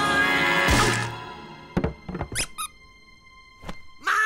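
Cartoon sound effects over music: a character's loud yell breaks off with a thump about a second in. Then come a few quick, squeaky rising whistles over a held tone, and another thump near the end.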